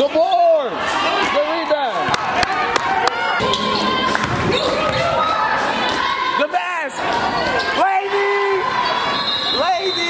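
Basketball game on a hardwood gym floor: a ball bouncing, sneakers squeaking in short rising-and-falling squeals several times, and players and spectators calling out.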